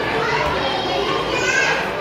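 Young children playing and vocalising over steady background noise, with one child's high-pitched voice standing out about a second and a half in.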